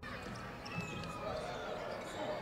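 Live basketball game sound in an arena: a ball being dribbled on the hardwood court over a steady murmur of the crowd and faint voices.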